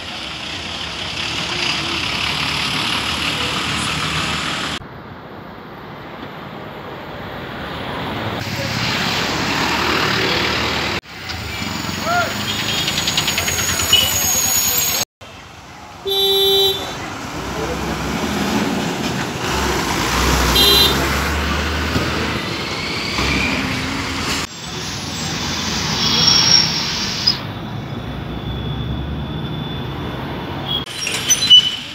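Buses and road traffic running, with engine noise throughout and a short vehicle horn toot about sixteen seconds in. The background changes abruptly several times.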